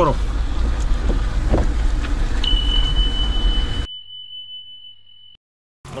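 Lada Niva engine and road noise heard inside the cabin, a steady low rumble as it drives a muddy dirt track, cutting off abruptly about four seconds in. About two and a half seconds in, a single steady high beep starts; it runs on alone over a faint hum after the driving sound stops and ends shortly before the close.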